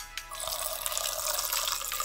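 Drink poured from a plastic pitcher into a glass: a steady splashing pour that starts about half a second in and keeps going.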